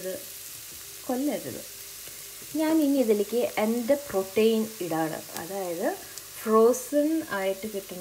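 Onions and masala frying in an enamelled cast-iron pot, sizzling, while a wooden spoon stirs and scrapes across the pot's base in repeated short squeaky strokes, busier in the second half.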